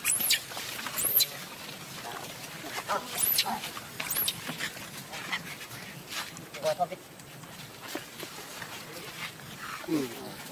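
Baby macaque screaming in short, high-pitched arching cries, four of them in the first half, with fainter calls after.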